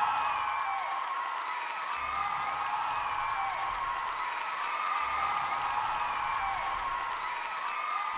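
Theatre audience applauding and cheering, with scattered whoops, as the music dies away in the first moment.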